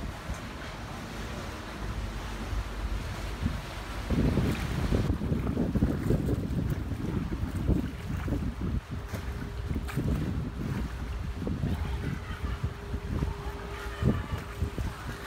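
Wind buffeting the microphone outdoors: an uneven low rumble that swells about four seconds in. A faint steady hum joins past the halfway point.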